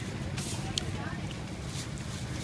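Street ambience: a steady low traffic rumble with faint voices in the background, and two brief clicks in the first second.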